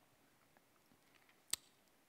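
Near silence in a room, broken by one sharp click about one and a half seconds in.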